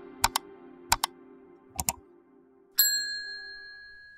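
Three mouse-click sound effects, each a quick double click, about a second apart, followed near the end by a bright electronic ding that rings and slowly fades.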